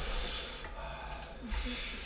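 A man breathing hard through his mouth in hissing breaths against the burn of a Carolina Reaper chilli, a second breath coming about a second and a half in.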